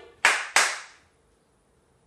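Two sharp hand claps, about a third of a second apart.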